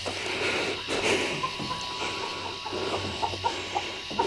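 Quiet stretch with a few soft clucks from chickens and light rustling of footsteps moving through grass, over a faint steady hiss.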